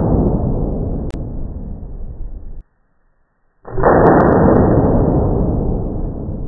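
Slowed-down playback of a Freedom Arms .454 Casull revolver firing: each shot is stretched into a long, low blast that slowly dies away. The first fades and cuts off suddenly about two and a half seconds in; after about a second of silence, a second slowed shot starts and fades.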